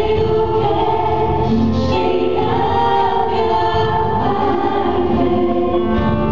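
Live gospel worship song: a group of voices singing sustained melodic lines together, choir-like, over band accompaniment, at a steady level.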